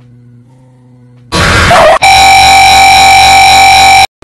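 A faint steady hum, then a little over a second in a sudden blast of extremely loud, clipping distorted noise. It turns into a harsh, piercing distorted tone held steady until it cuts off abruptly: a deliberately overdriven meme sound effect.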